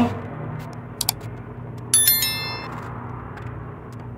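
A single bright metallic ding about two seconds in, ringing out briefly, after a faint click about a second in; a low steady hum runs underneath.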